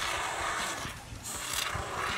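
Aerosol can of Great Stuff expanding foam sealant spraying through its straw: a hiss that eases off about a second in and comes back near the end.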